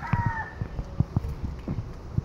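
A rooster's crow ends in its drawn-out final note in the first half second. Irregular low thumps of footsteps on bare ground follow.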